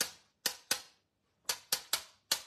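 A black paint marker tapped sharply to spatter ink: six crisp clicks, in quick groups of two and three with short gaps between.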